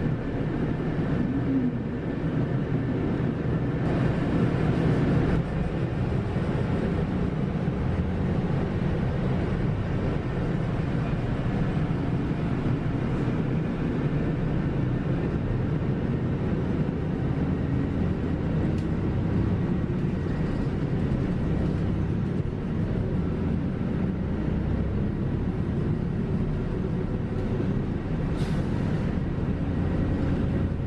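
Inside a Kyoto city bus: its engine running and road noise, a steady drone as the bus drives along.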